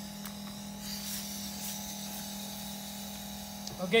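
Novecel F10 mini liquid nitrogen freezer running with a steady hum and faint hiss, with a couple of light ticks in the first second.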